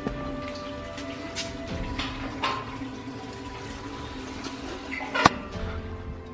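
Background music with held, shifting notes, over a few light footsteps and small knocks; a sharp click about five seconds in is the loudest sound.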